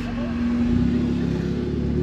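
Modified VW Caddy's Audi S3 turbocharged four-cylinder engine idling steadily, heard from inside the cabin.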